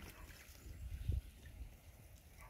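Low wind rumble on the microphone, with a few faint soft pecks as a white domestic goose's bill picks at scattered grain feed in the grass.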